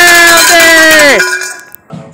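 A man's voice shouting long drawn-out notes that drop in pitch at their ends, over the quick, even rattle of a handheld cowbell being shaken. Both stop sharply about a second in, leaving a click near the end.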